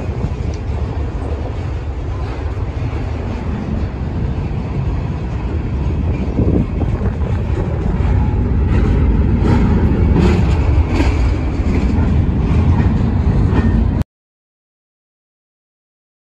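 Freight cars rolling past close by: a steady rumble of steel wheels on the rails with scattered clanks, as the train slows down without braking. The sound grows louder about six seconds in and cuts off abruptly near the end.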